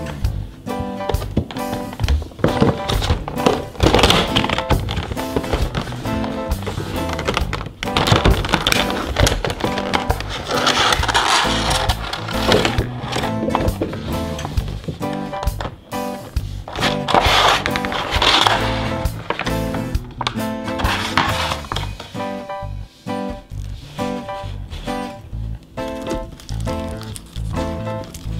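Background music with a steady tune, with several spells of rustling and clattering from clear plastic packaging being handled as the box is opened and the mug is slid out of its tray.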